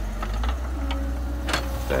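13-tonne JCB tracked excavator running with a low, steady rumble and a faint steady tone, with a sharp click about a second and a half in.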